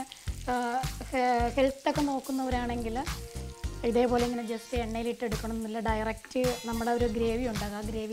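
Cubed potatoes frying in oil in a pan and sizzling as they are stirred with a spatula, with frequent small clicks and scrapes. A voice runs over it most of the time and is louder than the frying.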